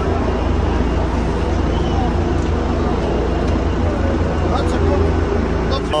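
A steady low rumble of outdoor background noise with indistinct voices talking in the background.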